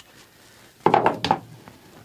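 Short metallic clatter of hand tools or engine parts: a quick cluster of knocks about a second in, lasting about half a second.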